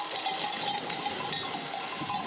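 Livestock bells clanking, with a steady ringing tone under many quick metallic clinks.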